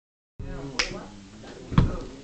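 Hands beating on a school desktop: a sharp slap, then about a second later a heavier thump on the desk, the start of a drummed beat.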